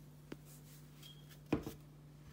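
Kitchen items being handled over a bowl of mashed potatoes: one light click about a third of a second in, then two louder knocks a little past halfway, over a faint steady hum.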